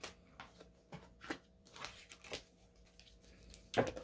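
Tarot cards being shuffled by hand: soft, irregular flicks and taps of the cards, with a louder one near the end.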